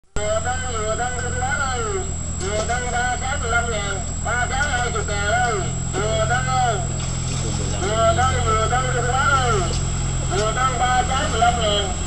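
A coconut vendor's sing-song hawking cry, "Dừa cân, dừa cân đây!", repeated over and over from a motorboat. The boat's engine runs steadily underneath.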